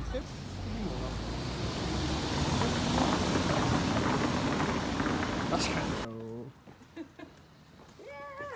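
City street traffic noise, a dense rush of passing vehicles that swells louder in the middle, then cuts off abruptly about six seconds in. A brief voice and a much quieter street follow the cut.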